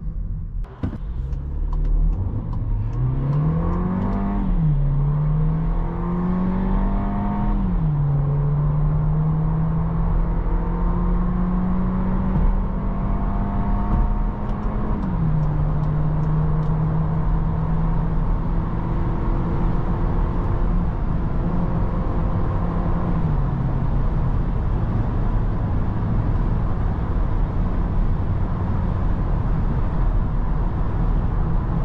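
Seat Ateca's 1.5 EcoTSI four-cylinder petrol engine under full-throttle acceleration, heard from inside the cabin. The revs climb and drop back at four upshifts of the seven-speed automatic, each gear held longer than the last, over steady tyre and road noise.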